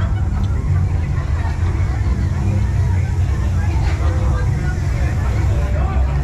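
Crowd babble: many people talking and calling out at once over a steady low rumble.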